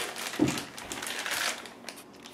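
Thin plastic bag crinkling as it is handled and pulled off a laptop power adapter, a continuous run of small crackles.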